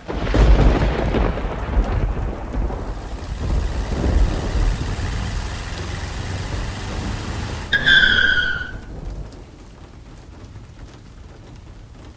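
A thunderclap breaks suddenly and rolls on for several seconds, swelling again about four seconds in, over the hiss of rain. Near the end a short high tone sounds, sliding slightly down, and the rumble fades to light rain.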